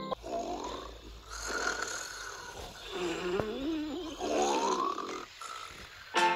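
Cartoon snoring sound effect: several drawn-out snores in a row, the later ones with a wavering pitch and one rising into a whistle about two-thirds of the way in.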